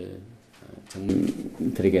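Voices saying "amen": two short, low, drawn-out utterances, one about a second in and one near the end, after a brief lull.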